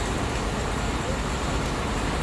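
Steady factory machinery noise from a quilting production line: an even, continuous hum and hiss with no distinct beats or knocks.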